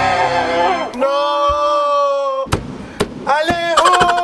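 A man yelling in long, drawn-out shouts while hammer blows strike the box wall, with sharp impacts from about halfway through.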